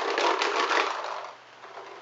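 A few paintballs rattling hard inside an Empire Prophecy hopper as it is shaken, testing whether its HK Army Epic speed feed lid pops open. The lid holds shut. The rattle dies away after about a second and a half.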